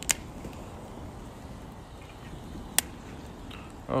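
Wood fire burning in a fire pit: a steady rush of flame with two sharp crackling pops, one right at the start and one near three seconds in.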